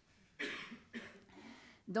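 A person coughing: a sharp cough about half a second in, then a second, softer and longer one.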